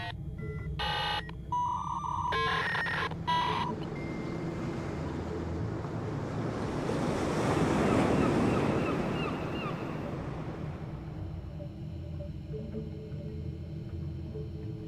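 Sea surf washing in a broad swell that rises to a peak about eight seconds in and then fades, over a low steady hum. A few short electronic beeps sound in the first four seconds.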